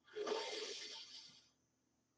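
A woman's slow, faint in-breath lasting about a second and fading away.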